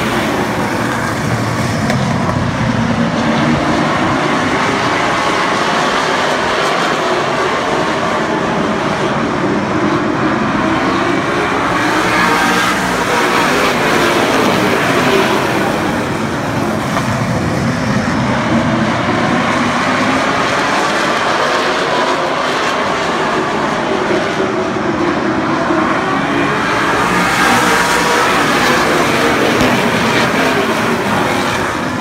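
A pack of late model stock cars racing at speed, their V8 engines running together in a loud, steady din. The pitch sweeps up and down over and over as the cars pass.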